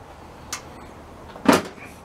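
Two knocks on a Husqvarna YT2454 riding mower's hood by a hand: a faint tap about half a second in and a louder, sharp knock about a second and a half in.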